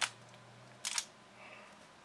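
X-Man Bell magnetic pyraminx being turned by hand: one short, sharp clack of a layer turn a little under a second in, with a faint rustle of the pieces shortly after.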